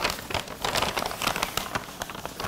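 Brown paper food wrappers crinkling as two people unfold them by hand: a quick, dense run of small crackles.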